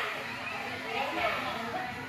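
Indistinct voices of children playing, overlapping chatter with no clear words, carrying in a large indoor play room.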